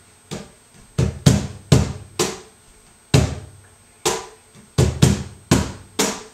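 Cajon played by hand in a slow tientos compás: about a dozen strokes in uneven groups. Deep bass strokes from the centre of the face carry the accents, with lighter snare slaps between them.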